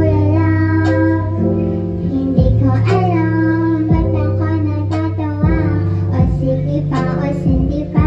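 A female singer singing a Tagalog pop song into a handheld microphone over instrumental accompaniment, the low accompanying notes shifting every second or so under her voice.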